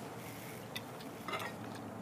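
Faint clinks of cutlery on a plate, one light click a little under a second in and another brief clink about a second and a half in, over a low steady background hiss.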